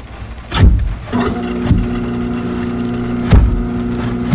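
Two heavy low thuds, with a steady hum of several held tones starting about a second in, like a machine or engine running.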